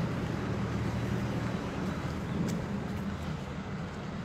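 Steady outdoor street background with a low hum of distant traffic.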